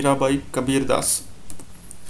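A man's voice talking for about a second, then a few sharp computer keyboard key clicks.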